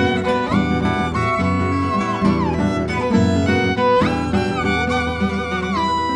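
Violin and acoustic guitar playing a duo. The violin holds long notes that slide up and down in pitch over a steady plucked guitar accompaniment.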